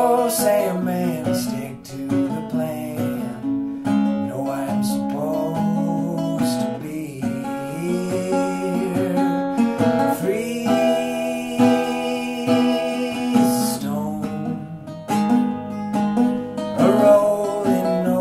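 Acoustic guitar playing a folk song's instrumental passage, notes and chords ringing on steadily.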